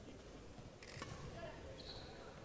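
Faint badminton rally: a racket strikes the shuttlecock with a sharp click about a second in, and a court shoe squeaks briefly on the floor near the end.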